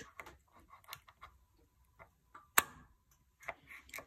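Spring-loaded automatic centre punch pressed against the side of a wooden workbench, firing once with a hard click about two and a half seconds in. Its release leaves a dimple. A few faint ticks of handling come before it.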